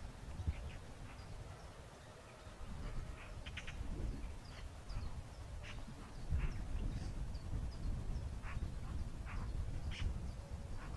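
Wind rumbling on the microphone, with faint birdsong of small high chirps repeating and a few short bird calls scattered through.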